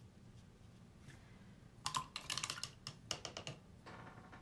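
Two quick flurries of light, sharp clicks and taps, the first about two seconds in and the second a second later, with one more click near the end.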